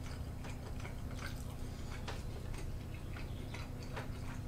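Eating at the table: chewing and sipping, with chopsticks lightly clicking against ceramic bowls several times, over a steady low hum.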